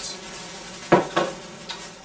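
A butane-canister culinary torch set down on a kitchen countertop: two sharp knocks about a second in and a lighter one shortly after. Under them runs the steady fizzing crackle of a burning sparkler.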